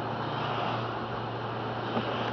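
A car driving on a wet road, heard from inside the cabin: a steady low engine hum under an even hiss of tyres on wet pavement. There is a small tick near the end.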